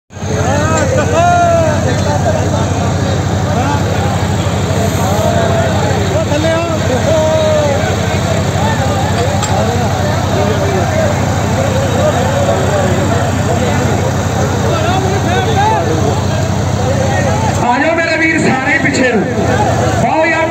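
Tractor diesel engine running steadily with a crowd of men shouting over it. The engine sound cuts out abruptly near the end, leaving the voices.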